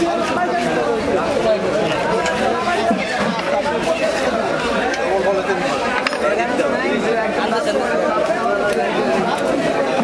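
Many people talking at once in a steady chatter of overlapping voices, with one short click about six seconds in.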